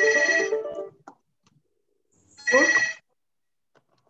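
Phone ringtone signalling an incoming call: two ring bursts, each under a second long, about two and a half seconds apart.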